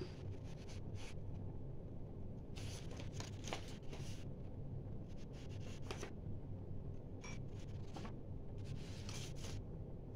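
Faint rustling and handling of papers, with scattered short rustles and soft knocks spread through, over a low steady hum.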